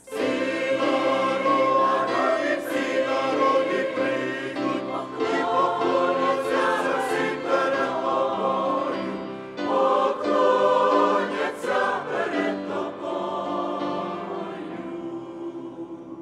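Mixed choir of men's and women's voices singing a hymn together. The choir comes in sharply after a pause, breaks briefly about halfway through, then sings the next phrase and fades down near the end.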